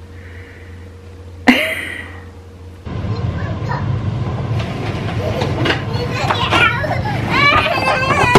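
A young child playing with a plastic toy truck: a rumbling, clattering noise starts suddenly about three seconds in, and high wavering child vocal sounds come near the end. A single short sharp sound comes earlier, about a second and a half in.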